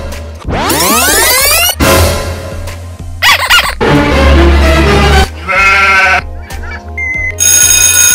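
Short iMovie sound-effect previews played one after another: sweeping tones for the first two seconds, a sheep bleating in the middle, and a school bell ringing near the end.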